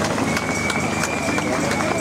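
Crowd applauding, a dense patter of many hand claps, with a steady high tone running through it from about half a second in.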